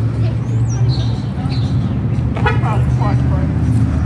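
Street traffic noise dominated by a steady low hum of an idling motor vehicle engine, with a faint voice briefly about two and a half seconds in.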